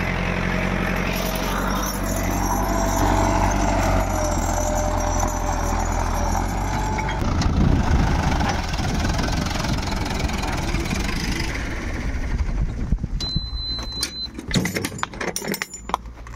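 Farm tractor's diesel engine running steadily, pulling a seed drill through tilled soil. After about seven seconds the even hum gives way to a rougher, noisier sound, and near the end there are short knocks and clatter.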